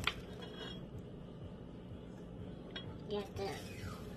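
Light kitchen handling: a sharp click just after the start, then a few faint clinks of a spoon and dishes on the counter while oats are scooped.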